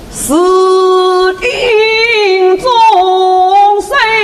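A woman's voice singing a Yue opera aria in long held notes, starting about a third of a second in and broken briefly a few times between phrases.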